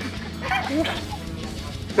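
Faint, short vocal sounds about half a second in, over a steady low background music bed.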